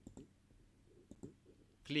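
Computer mouse clicking several times, short faint clicks with gaps between them, as a right-click menu is opened, paste is chosen and a button is clicked.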